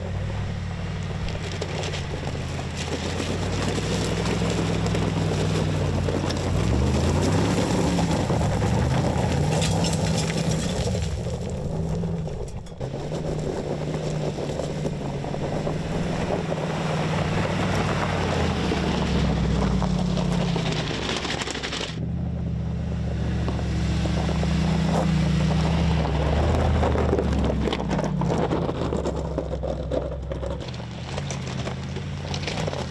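Mercedes-AMG G 63's twin-turbo V8 engine pulling under load, its revs rising and falling, with tyres crunching over loose rock and gravel. The sound changes abruptly twice.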